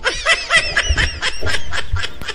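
A man laughing in short, quick bursts.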